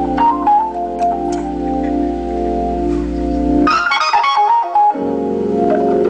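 Two-manual Hammond-style drawbar organ playing gospel chords: sustained chords over a low bass note with melody notes stepping above. Just past the middle the bass drops out for a quick run of high notes, and about a second later a new full chord comes in with the bass.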